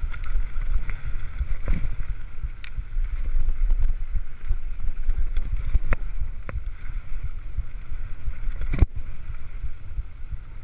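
Mountain bike riding fast down a dirt trail: a steady low rumble of wind on the microphone and tyres rolling over dirt, with a few sharp knocks and rattles from the bike over bumps, the loudest near the end.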